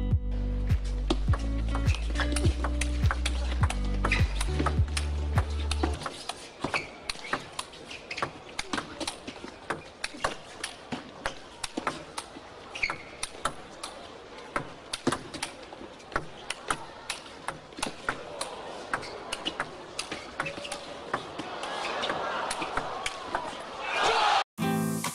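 Background music for about the first six seconds, then a long, fast table tennis rally: a celluloid ball clicking off the rackets and bouncing on the table many times in quick succession. Crowd noise swells near the end.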